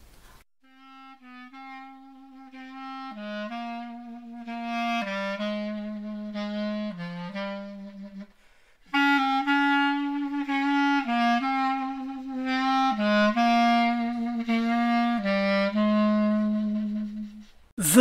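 Solo instrumental music: one wind instrument playing a slow melody of held notes, in two phrases with a brief pause about halfway through.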